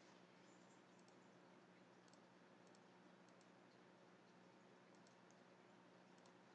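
Near silence: low room hum with faint computer mouse clicks, single and in pairs, every second or so.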